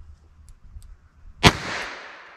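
A single shot from a Ruger LCR revolver firing a .32 S&W Long load at a starting charge through its very short barrel, about one and a half seconds in, followed by a trailing echo.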